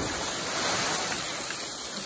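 Churning and spraying water from two people plunging feet-first into a river pool, an even rush that slowly dies down.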